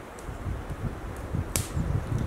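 Wind buffeting the microphone in low gusts, with one short slurp of hot coffee from a metal camping cup about one and a half seconds in.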